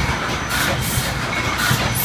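Automated wine bottling line running, its rotary rinser and filler carrying glass bottles, with a steady, dense mechanical clatter.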